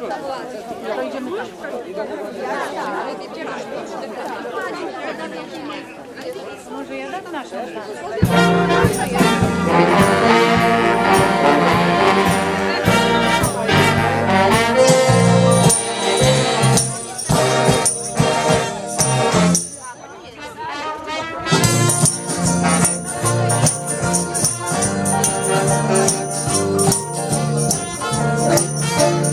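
Voices and chatter for the first eight seconds. Then a swing big band with saxophones and brass starts up loudly, breaks off briefly about twenty seconds in, and plays on.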